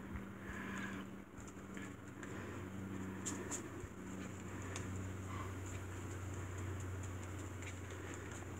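Faint rustling and dabbing of torn book-page paper being pressed down with fingers and a glue brush during decoupage with Mod Podge, with a few small taps about three to five seconds in. A steady low hum runs underneath.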